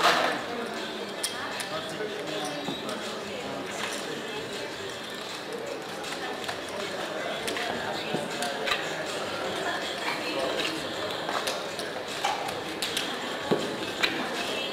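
Casino chips clicking against each other as a roulette dealer gathers and stacks them, scattered sharp clicks over a steady murmur of background chatter.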